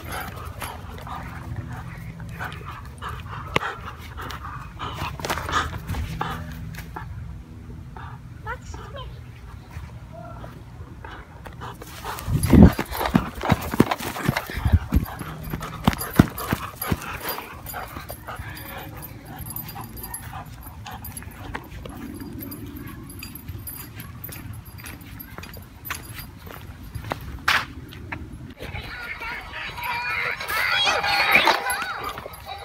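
A German shepherd plays with a plastic baby toy carried in its mouth, with dog sounds and the hard plastic toy clattering and knocking. The loudest cluster of knocks comes about twelve seconds in.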